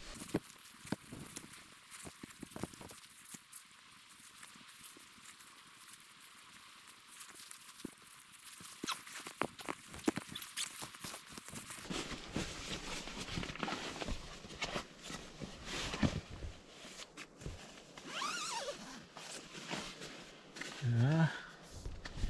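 Rustling of clothing and a nylon sleeping bag with scattered light knocks as someone pulls on socks and handles bedding, getting busier about halfway through. A man's voice murmurs briefly near the end.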